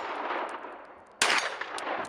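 A single gunshot from a compact pistol-caliber firearm about a second in, with a ringing echo that trails off. At the start the echo of an earlier shot is still dying away.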